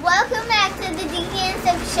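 Children talking in high voices, in two short phrases, over a steady hiss of rain.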